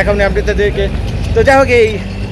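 A man's voice over a steady low rumble of road traffic.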